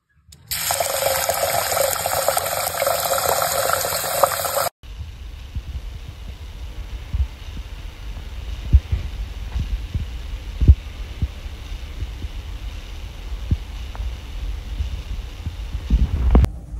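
Water from a kitchen tap running into a rice cooker's inner pot of rice for about four seconds, then cutting off suddenly. After it, quieter room noise with a few dull low thumps.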